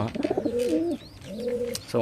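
Domestic pigeon cooing: a wavering, pulsing coo in the first second, then a second, steadier coo held for about half a second.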